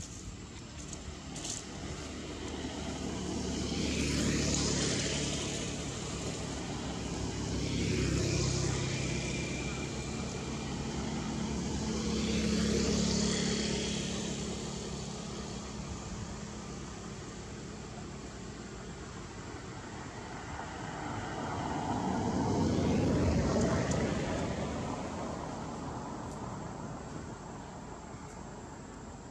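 Motor vehicles passing by, heard as four slow swells of engine and tyre noise that rise and fade, about four, eight, thirteen and twenty-three seconds in.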